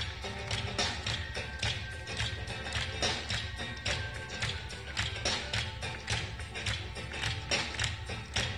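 A live funk band playing a groove, recorded straight off the mixing desk, with a steady run of sharp, evenly spaced drum hits over a constant bass line.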